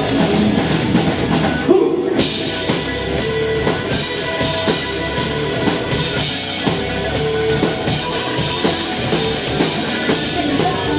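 Live rock band playing loud, with a drum kit and electric guitars. About two seconds in a hard hit is followed by a brief break in the cymbals and high end, then the full band comes back in.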